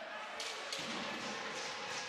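Roller hockey arena ambience: a steady crowd murmur across the rink, with a couple of faint clacks from the play about half a second in.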